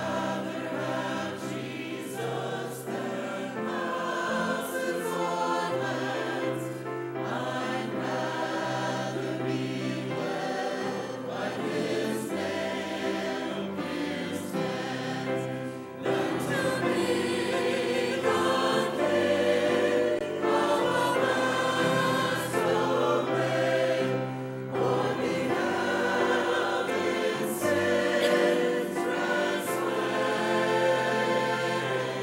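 A mixed church choir of men's and women's voices singing an anthem, growing noticeably louder about halfway through.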